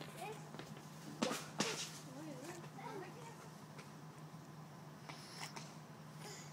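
A small child's wordless vocalising, a few wavering sounds, with two sharp knocks just before it about a second in.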